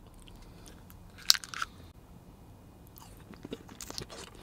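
A sharp, crunchy bite into a yogurt candy about a second in, followed by a brief flurry of crunching. After that come quieter, scattered mouth clicks of chewing close to the microphone.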